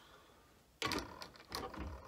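A vinyl record being set on a turntable and the turntable handled: a short clatter of clicks and knocks just under a second in, then a second bout about half a second later.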